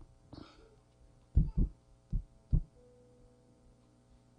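Four dull, heavy thumps, in two quick pairs, with a short rustle just before them, over a faint steady hum.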